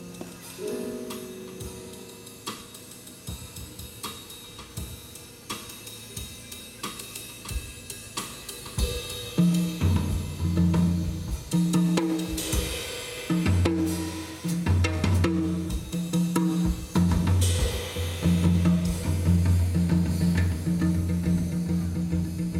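Live jazz drum kit playing cymbals, hi-hat and snare, quietly at first. About nine and a half seconds in, an electric bass comes in with loud, sustained low notes under the drums.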